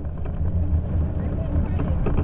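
Bicycle riding over rutted, packed snow, heard through a handlebar-mounted camera: a steady low rumble of vibration and wind on the microphone, with scattered clicks and rattles as the bike jolts over the snow.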